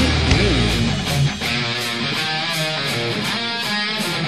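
Instrumental intro of a melodic heavy metal song: electric guitar over a steady drum beat, with notes bending in pitch near the start.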